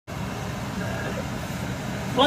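A steady low background hum with faint, indistinct voices.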